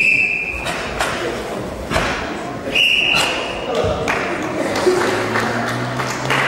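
A referee's whistle gives two short blasts, one right at the start and another about three seconds in. Between them are a few dull thuds, and voices follow later.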